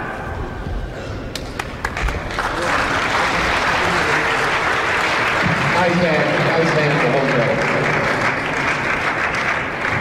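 Spectators applauding, beginning about two and a half seconds in and running on evenly, after a few sharp knocks.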